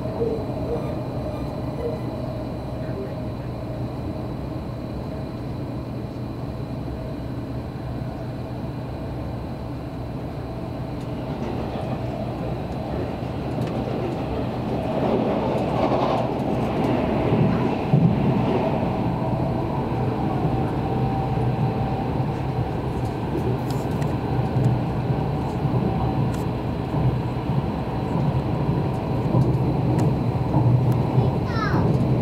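Odakyu limited express train running at speed, heard from inside the passenger car as a steady rumble of wheels on rail. The noise swells about halfway through and is loudest as another train passes close by on the adjacent track.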